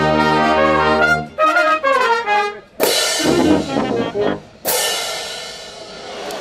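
A wind band of trumpets, trombones and flutes plays the closing bars of a piece: a held chord, a few short notes, then two loud crashes, each ringing away over a second or two as the piece ends.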